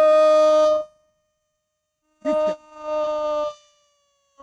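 A commentator's drawn-out goal cry: a long held shout that ends about a second in, then a second long held shout near the middle.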